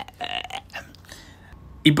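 A short throaty vocal noise, like a burp or grunt, about a quarter second in, followed by a quiet stretch until a man starts speaking near the end.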